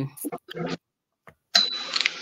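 Brief speech fragments, a gap of dead silence, then about a second and a half in a short, high, single-pitch electronic ding that holds steady for about half a second.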